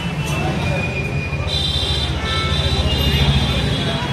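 Steady low rumble of road traffic with indistinct voices, and a few short high-pitched horn toots in the middle.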